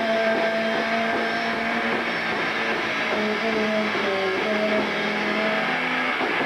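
Electric guitar played through distortion, ringing out long sustained notes that change every second or two over a thick, noisy buzz.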